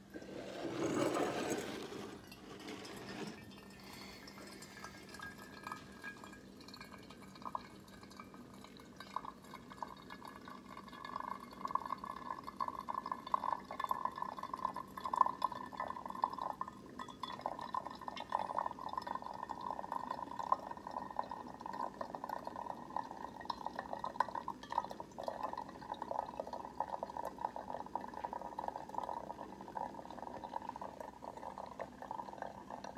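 Bunn ThermoFresh drip coffee maker brewing: hot water spraying and coffee trickling into the thermal carafe as a steady crackling, gurgling patter that grows louder after about ten seconds. A brief louder rush comes about a second in.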